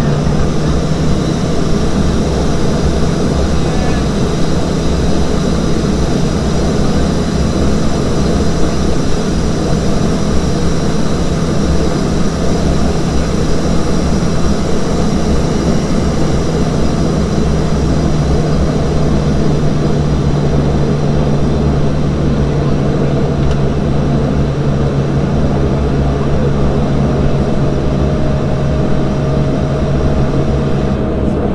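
A Saab 340B's General Electric CT7 turboprop engines idling steadily, heard from inside the cabin: a constant deep propeller drone with a thin turbine whine above it.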